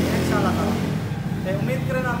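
A man talking, over a steady low hum.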